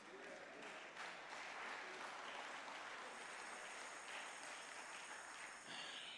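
Congregation applauding, a faint steady clapping.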